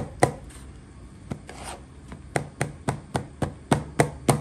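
Sharp taps and knocks of a hand patting and pressing a breaded cutlet into a plastic bowl of breadcrumbs, firming the coating so it stays on: a single tap near the start, another a little after a second in, then a quick run of about four taps a second.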